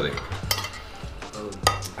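A metal fork scraping and clinking against a ceramic dinner plate, with two sharper clinks, one about half a second in and one near the end.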